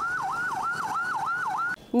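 Police siren in a fast yelp, its pitch sweeping up and down about four times a second. It cuts off suddenly near the end.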